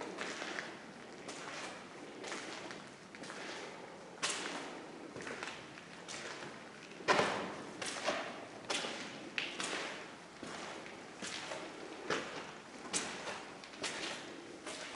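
Footsteps and scuffs on a concrete floor: irregular soft thuds about once a second, the loudest about seven seconds in.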